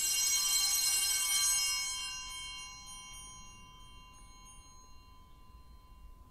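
Altar bells ringing at the elevation of the consecrated host. A cluster of bright ringing tones stops being rung about a second and a half in, then fades away over the next few seconds.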